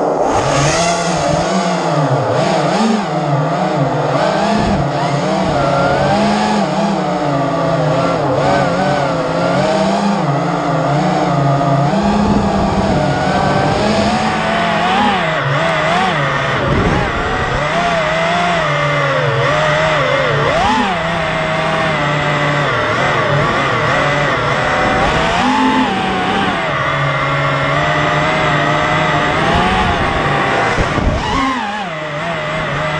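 FPV racing quadcopter's brushless motors heard through its onboard camera: a loud buzzing whine that rises and falls in pitch continually with the throttle as it flies low and fast.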